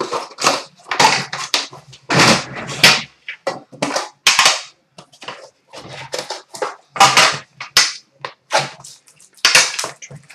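Plastic wrapping crackling and tearing as a sealed hockey-card tin is unwrapped and opened by hand, in a run of irregular short crackles.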